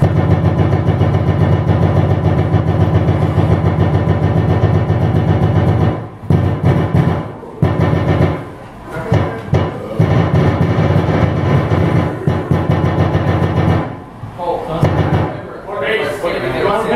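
Live band with drum kit playing loud, fast heavy music with a rapid even beat and heavy bass, stopping and starting several times in short bursts.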